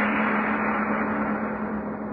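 A gong ringing out after one loud strike, a steady low hum under a bright shimmer, slowly fading: the dramatic sting that closes the radio play. It is heard on an old, narrow-band radio recording.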